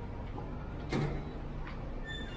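Hotel room door being opened and walked through: a clunk about a second in and a lighter click later, over a steady low room hum.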